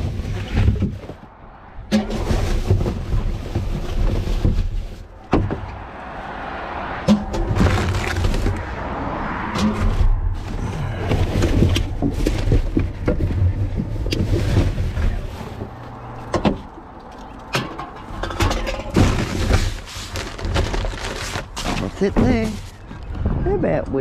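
Gloved hands rummaging through rubbish in a wheelie bin: paper and plastic rustling, with irregular knocks and clunks of drink cans and containers being moved.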